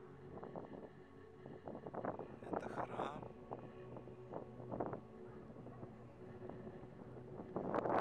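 Wind buffeting the camera microphone in irregular gusts, strongest about two to three seconds in and again around five seconds.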